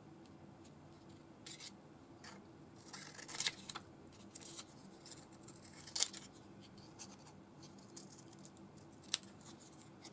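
Small craft scissors snipping a strip of paper, with paper handling and scratching between cuts. There are several short snips, the sharpest about three and a half, six and nine seconds in.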